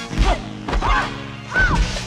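Three dubbed film fight impacts, punch-and-kick hits about two-thirds of a second apart, the last two with short yells from the fighters, over the background music score.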